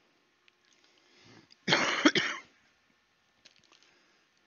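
A person coughing, a loud double cough about one and a half seconds in, followed by a few faint clicks near the end.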